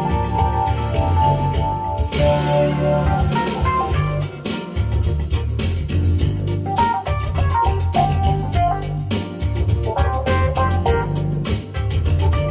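Nord Electro 6D stage keyboard played live, sustained organ-like chords and runs, over a backing track from a Roland Triton workstation with drums and a strong bass line.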